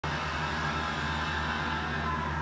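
A low, steady foreboding tone from the show's soundtrack, a sustained ominous drone, heard through a television's speakers.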